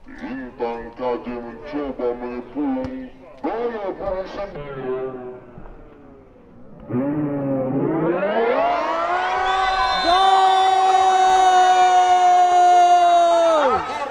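A man's voice talking quickly and excitedly, then a long drawn-out shout that rises in pitch and is held steady for about four seconds before dropping off at the end.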